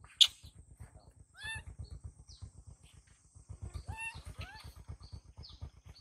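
Infant macaque giving a few short, high, squeaky calls that dip in pitch, typical of a young monkey distressed at being left alone. A sharp click sounds just after the start.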